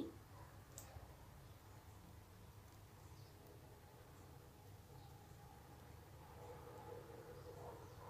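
Near silence: faint room tone, with one light click about a second in.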